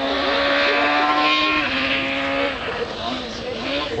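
Rally car engine running hard at high revs along a gravel special stage, heard from a distance. It holds one steady note for about two and a half seconds, then the note breaks off and the sound eases.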